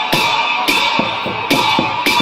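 Traditional Newar processional music for a Lakhe dance: drum strikes roughly twice a second over the steady ringing of hand cymbals.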